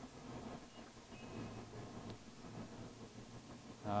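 Faint, steady whir of a Southwestern Industries TRAK DPME2 CNC bed mill's X-axis servo motor and ball screw traversing the table, with a light click about two seconds in.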